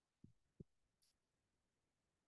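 Near silence: room tone, with two faint low thumps close together about a quarter and half a second in, and a faint click about a second in.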